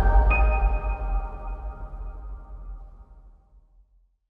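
Outro logo music sting: a deep bass boom rings on while a bright high ping sounds about a third of a second in, and both fade away over about three seconds.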